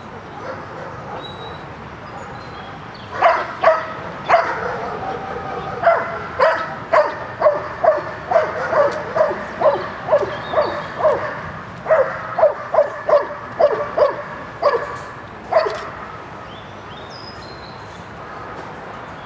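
A dog barking over and over, about two barks a second, starting a few seconds in and stopping a couple of seconds before the end, with a few short breaks in the run.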